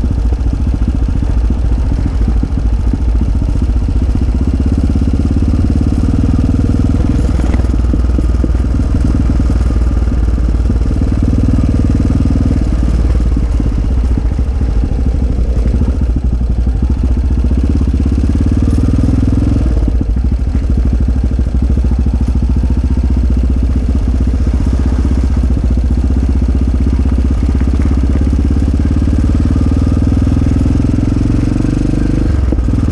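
Off-road motorcycle engine running steadily while riding along a gravel road, its note rising and dipping a little with the throttle.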